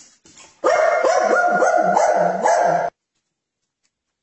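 A dog barking in a quick, unbroken run for a couple of seconds, which cuts off suddenly.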